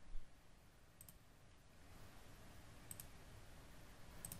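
A few faint computer mouse clicks over low room hiss: one at the start, one about a second in, and a quick double click near three seconds.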